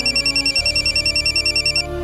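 An electronic telephone ring: a fast warbling trill flipping between two high tones about ten times a second, stopping shortly before the end. Soft background music with low held tones runs underneath.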